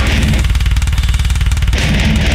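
Slam death metal song with heavily distorted, down-tuned guitars over fast, even drumming and deep bass. About half a second in, the guitar chords drop away for roughly a second, leaving the drums and low end. The full band crashes back in near the end.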